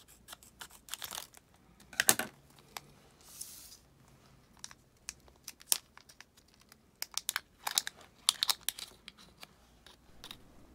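Scissors cutting into a coin-battery blister pack, then the plastic blister and card backing crackling and tearing as the battery is worked free. It is a run of sharp snips and crinkles, loudest about two seconds in and again between about seven and nine seconds.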